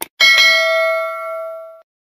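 A mouse-click sound effect, then a single bell ding that rings and fades away over about a second and a half: the notification-bell sound effect of a subscribe animation.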